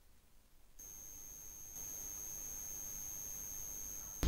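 Near silence, then about a second in a faint steady hiss begins, with a thin, high-pitched electronic tone held level through it.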